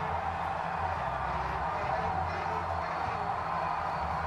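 Televised AFL match audio playing quietly: a steady wash of noise with faint speech in it.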